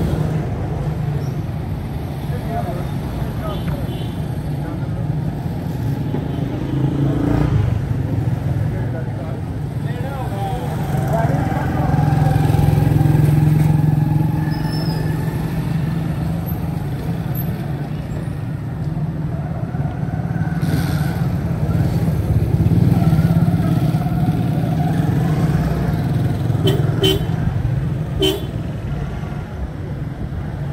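Busy market-street traffic: motorcycle rickshaw and motorbike engines running steadily, with occasional horn toots.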